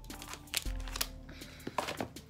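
Joss paper (ancestor money) crinkling in a few short rustles as it is folded by hand, over background music with held notes.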